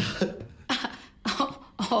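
A woman coughing in about four short, sharp bursts across two seconds, a spluttering fit of surprise.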